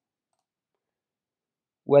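Silence, with the narrator's voice starting a word near the end.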